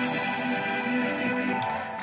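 Bowed viola played live through electronic effects: a series of held notes in a dense, saturated wash of reverb and filtering. The effects are being shaped by a dancer's arm movements through an MYO gesture-control armband.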